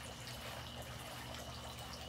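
Water trickling steadily from a tiered garden fountain.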